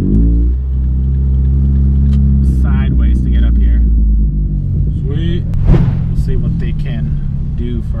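Car engine and exhaust droning low and steady inside the cabin as the car rolls slowly, the exhaust freshly damaged. A voice or singing comes over it a few times.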